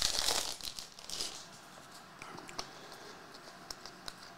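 Plastic wrapper of a trading-card pack being torn open and crinkled, loudest in the first second or so, then faint scattered clicks as the cards are handled.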